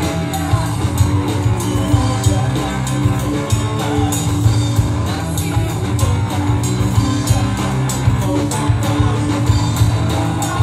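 Live band playing a song through a PA: electric guitar, bass guitar and a drum kit keeping a steady beat.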